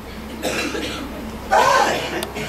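A man's voice preaching: a breathy vocal sound about half a second in, then a loud exclaimed "Ah" about a second and a half in.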